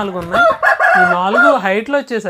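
Patta rooster crowing once, a loud call that peaks from about half a second in for about a second.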